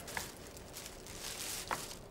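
Quiet room tone with two faint clicks about a second and a half apart.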